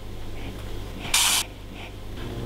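A pug's noisy breathing through its flat nose, with one short, loud hissing puff of air a little past a second in.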